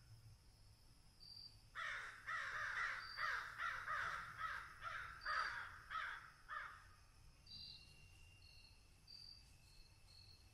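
A crow cawing in a quick run of about a dozen harsh calls, roughly two a second, starting about two seconds in and stopping a second or so before the end, with faint short high chirps around it.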